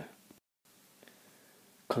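Near silence between spoken sentences: faint room tone, broken by a brief drop to complete silence about half a second in, with a man's voice at the very start and again near the end.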